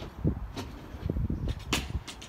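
Wind buffeting a handheld microphone with an uneven low rumble, broken by a few sharp clicks; the loudest and brightest click comes near the end.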